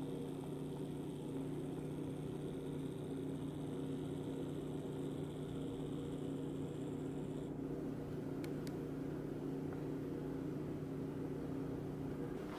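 Room tone: a steady low hum with several fixed pitches that does not change. Two faint ticks come about eight and a half seconds in.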